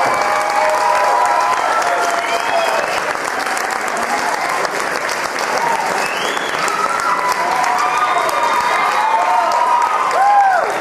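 Theatre audience applauding, a dense steady clatter of clapping, with voices calling out over it near the start and again in the second half.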